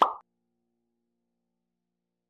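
A single short pop sound effect right at the start, fading within a quarter second, followed by silence. It is the last of a quick run of on-screen pop-up sounds.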